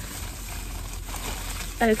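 Plastic bag rustling and crinkling as it is handled.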